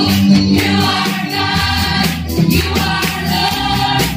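Congregational gospel worship song: a woman leads the singing through a microphone, with the congregation singing along.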